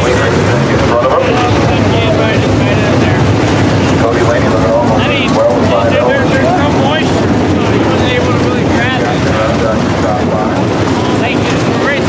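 Dirt-track modified race cars' engines running as a loud, steady din, with nearby voices mixed in.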